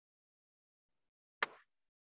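Near silence, broken by a single short click about one and a half seconds in.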